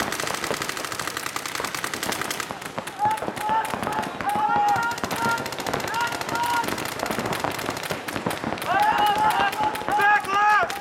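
Paintball markers firing rapid strings of shots, thickest in the first two and a half seconds. People shouting over the firing, a few seconds in and again near the end.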